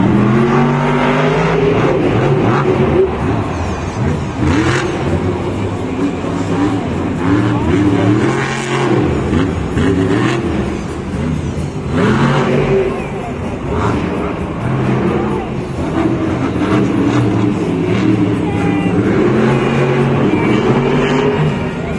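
Stone Crusher monster truck's supercharged V8 engine revving hard again and again, its pitch rising and falling continually through a freestyle run.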